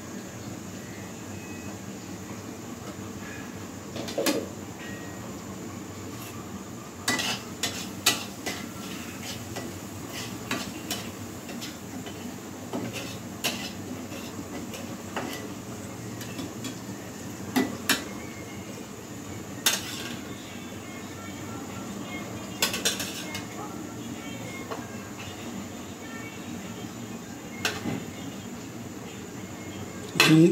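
Metal spoon clinking and scraping against a frying pan now and then, a dozen or so separate sharp knocks spread irregularly through the stretch, over a steady low background rush.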